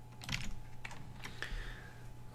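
Computer keyboard being typed on: a handful of irregular, fairly faint keystrokes.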